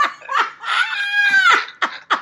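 A person laughing: a few short laughs, then one long high-pitched laughing squeal lasting about a second, breaking back into quick laughs at the end.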